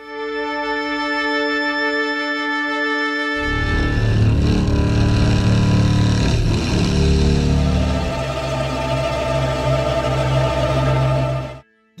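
Demo of Karanyi Sounds' Continuo, a Kontakt library of cinematic textures made from electric guitars. A held pad chord is joined about three seconds in by a denser, deeper layer as the chords shift, and the sound stops abruptly just before the end.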